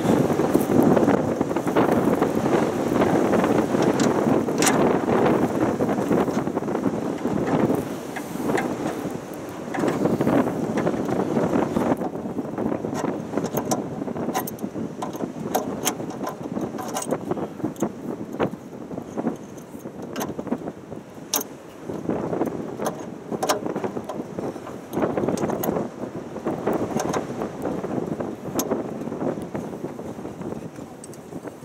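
Hand work on a bus's air brake valve fittings: scattered metallic clicks and clinks of tools and fittings over an uneven rustling of handling and movement on gravel, heavier in the first half.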